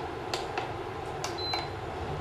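Silicone spatula stirring a thick cream sauce in a stainless steel pot, with a few light clicks as it knocks against the pot's sides. A single short, high electronic beep about one and a half seconds in, from the cooktop being switched off.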